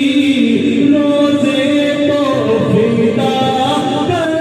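Unaccompanied devotional chanting, with long held vocal notes that glide from one pitch to the next.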